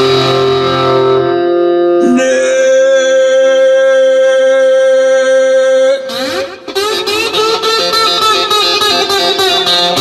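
Instrumental break of a song led by guitar. There is one long held note for about four seconds, a brief dip, then steady rhythmic strumming.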